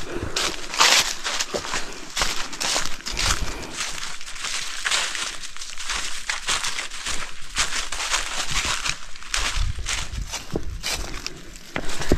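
A hiker's footsteps on a forest trail: a continuous run of short, crunchy, rustling steps.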